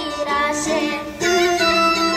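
Bulgarian folk music: a woman singing over an instrumental backing, which grows louder a little past halfway.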